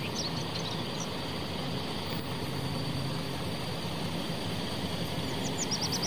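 A MAN coach bus's diesel engine idling steadily, under general street noise.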